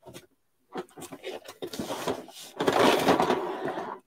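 Handling of a cardboard box as a built Lego set is worked out of it: a few light knocks, then a longer rustling scrape of card in the second half.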